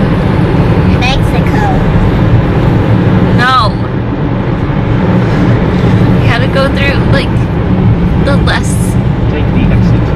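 Road and engine noise inside the cabin of a moving car: a loud, steady low rumble.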